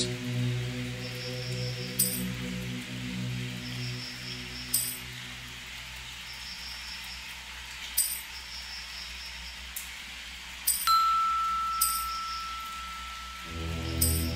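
Ambient electronic soundscape: a sustained low drone that fades over the first half and drops out near the end, with chime strikes every second or two. A single clear bell-like tone enters about eleven seconds in and is held.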